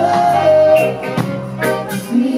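Live reggae band playing: a male singer holds a long note for about the first second over guitar, bass and drums, with sharp drum strokes keeping a steady beat.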